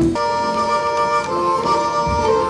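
Instrumental interlude in a choral song: as the choir's phrase ends, accompanying instruments play a melody in long held notes, shifting to a new note about a second in.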